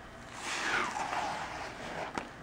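Cut fabric being peeled off a sticky Cricut cutting mat: a rasping peel that starts about half a second in, falls in pitch and lasts over a second.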